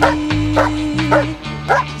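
German Shepherd barking steadily, about two barks a second, at a helper hidden in a protection-training blind: the hold-and-bark of protection work. A sung pop song with a held note plays under the barks.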